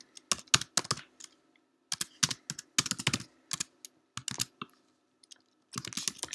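Typing on a computer keyboard: irregular runs of key clicks broken by short pauses.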